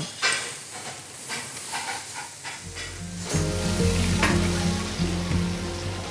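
Food sizzling as it fries on a hot grill and griddle in a commercial kitchen, with a few light clicks of utensils. Background music with sustained low notes comes in about halfway through.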